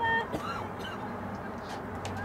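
Distant shouted calls of soccer players and spectators across the field. There is a short held shout right at the start, then a few brief calls, over a steady low hum.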